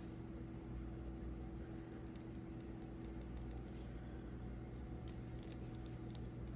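Small paintbrush tapping and brushing Mod Podge onto glitter cardstock: faint, scattered scratchy ticks, over a steady low hum.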